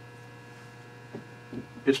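Steady low electrical mains hum with faint higher overtones. A man's voice starts just before the end.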